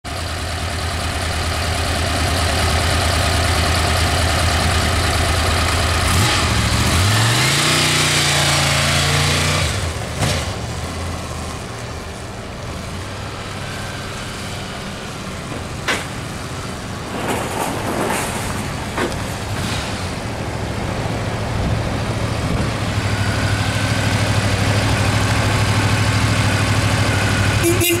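Honda VFR750F's gear-driven-cam V4 engine idling steadily, then rising in pitch as the bike pulls away about six seconds in. The engine is fainter through the middle as the bike rides around, with a few sharp clicks, and comes back louder to a steady idle close by near the end.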